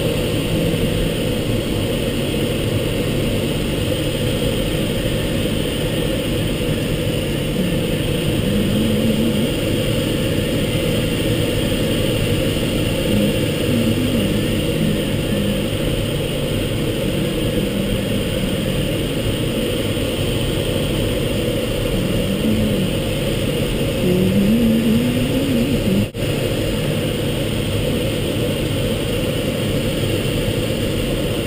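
Steady rush of air streaming over the canopy and fuselage of a Schempp-Hirth Mini-Nimbus sailplane in gliding flight, heard inside the enclosed cockpit with no engine.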